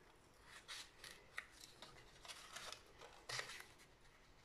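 Faint, brief rustles and scrapes of paper card being handled while a sticker is pressed and adjusted on it, with a small tick about a second and a half in.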